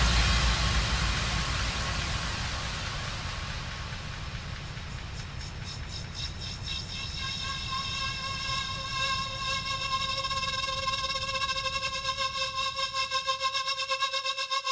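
Electronic dance music from a DJ set in a breakdown. A noise wash fades out over a low rumble, then a synth chord fades in and begins to pulse, quickening to about four pulses a second near the end.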